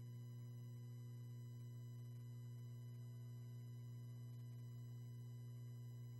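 Faint, steady low hum with a row of buzzy overtones, holding one pitch throughout: electrical mains hum on the sound recording.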